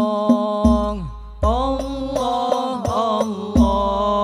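Al-Banjari sholawat ensemble: male voices chanting a devotional melody in unison, with frame drums (terbang) struck at intervals. The voices drop away briefly about a second in, then come back in on a rising note.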